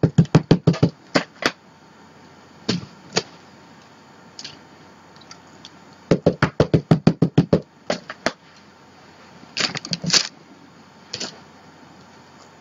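Ranger Archival ink pad dabbed quickly against a rubber stamp to ink it: two runs of rapid taps, about six a second, then a few separate louder knocks near the end.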